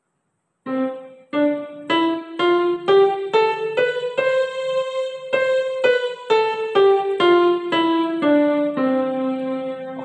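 Yamaha portable keyboard on a piano voice playing the C major scale one note at a time. It climbs from middle C to the C above, holds the top note for about a second, then steps back down to middle C.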